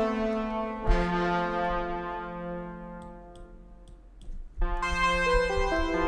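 Sampled brass ensemble from the Native Instruments Brass Ensemble Essential Kontakt library playing chords: a held chord, a new chord struck about a second in that slowly fades away, then another full chord entering near the end with notes moving within it.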